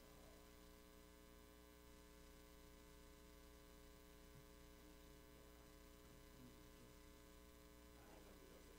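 Near silence with a faint, steady hum.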